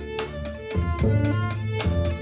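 Instrumental passage between sung phrases of a slow ballad: double bass notes under a sustained violin line, with an even cymbal beat of about four strokes a second.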